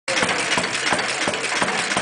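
Antique stationary gas engines, a three-horsepower and a six-horsepower, running with a regular beat about three times a second.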